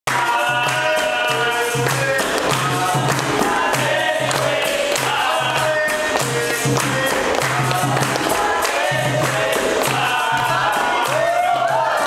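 Capoeira roda music: a group singing to steady hand claps, an atabaque drum and a berimbau, with a repeating low drum beat.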